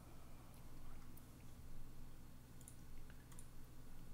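A handful of faint, scattered clicks from a computer mouse and keyboard being worked, over a low steady hum.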